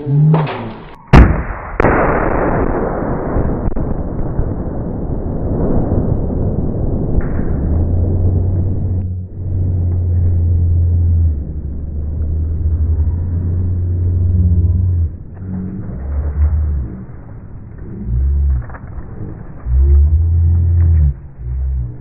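Two-pound tannerite charge detonating inside a PC case: one sharp blast about a second in and a second crack right after it, then a long decay that dies away over several seconds. Deep, low sounds come and go through the rest.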